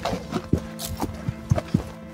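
Footsteps on a dry dirt trail: several irregular steps as people walk.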